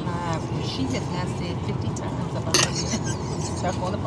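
Airliner cabin sound: a steady low hum with passengers' voices talking in the background, and one sharp clink about two and a half seconds in.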